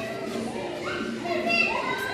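Young children's voices talking, high-pitched and rising in the second half.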